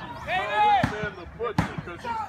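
A voice shouting, then two sharp thuds on a wrestling ring's mat about three-quarters of a second apart.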